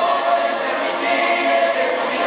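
A musical-theatre chorus singing together, many voices in a held, sustained passage.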